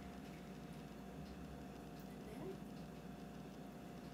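Quiet kitchen room tone: a steady low hum with a faint steady tone, and only very faint small sounds over it.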